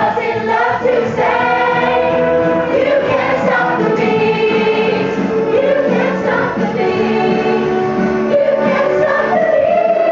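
A stage cast singing together as a choir over a loud backing track, with long held notes; a higher held note starts near the end.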